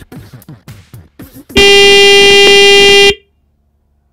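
A loud electronic buzzer sounds one steady, harsh tone for about a second and a half, then cuts off suddenly. It marks the race timer being stopped.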